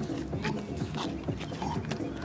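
Footsteps and sneaker scuffs on an asphalt court, short sharp knocks a few times a second, over indistinct background voices.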